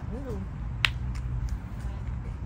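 A single sharp click a little under a second in, over a steady low background rumble.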